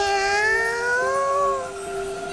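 A cartoon kitten's drawn-out high-pitched cute vocal, swooping down and then slowly rising for nearly two seconds before fading out, over a steady held musical tone.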